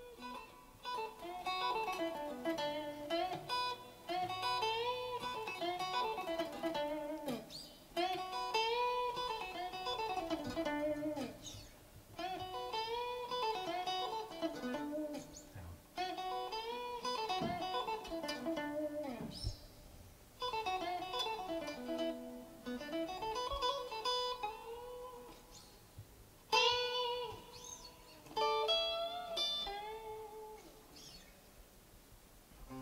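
Electric guitar picked one note at a time, played as a short run of notes repeated over and over in phrases of a few seconds, with brief pauses between them, like a learner practising a lick.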